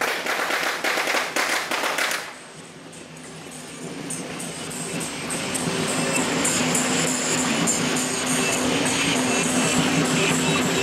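A rapid, dense crackle of popping, like a string of firecrackers going off, for about two seconds. It breaks off, and music with steady held tones fades in and grows louder.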